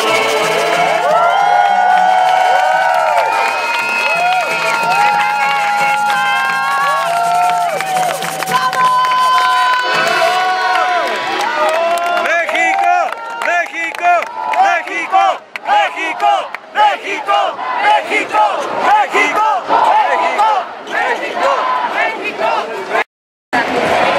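An accordion plays held chords over steady bass notes. About ten seconds in, the music gives way to a crowd of protesters chanting and cheering loudly, and the sound cuts out briefly near the end.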